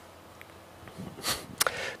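Faint room tone with a steady low hum. About a second in, a man breathes in sharply through the nose, followed by a small mouth click.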